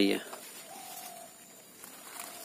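A faint bird call: one long, low, slightly falling note about half a second in, lasting roughly a second, over quiet outdoor background.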